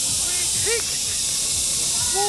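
A steady high-pitched hiss throughout, with a few short, distant voice-like calls about half a second in.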